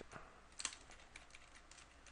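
Faint, irregular clicking at a computer, a handful of light clicks with one louder click a little after halfway.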